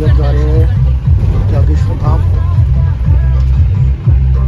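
Inside a moving passenger van's cabin: loud, low engine and road rumble, with indistinct voices over it near the start and again about two seconds in.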